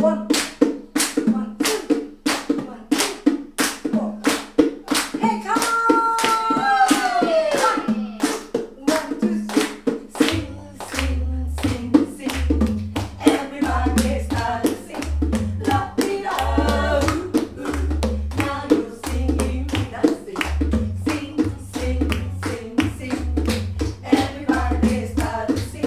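Audience clapping along in steady time, about two claps a second, with a women's vocal group singing over it. A falling two-note pitch slide comes about six seconds in, and a low bass line joins about ten seconds in.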